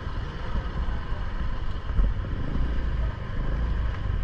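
Low, steady rumble of a motor vehicle moving slowly along a street, with a faint background of street noise.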